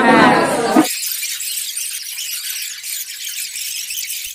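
A woman's voice for about the first second, then a steady high hiss with no low end that runs on after the voice cuts off.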